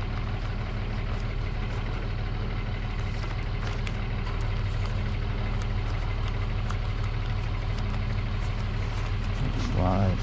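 A steady low mechanical hum, like an engine idling, with faint scattered clicks and a short burst of voice near the end.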